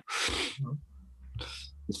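Two short breathy rushes of air from a person, the first about half a second long and the second about a second and a half in.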